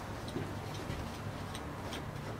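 Faint light ticks, a few and irregularly spaced, over a low steady room hum.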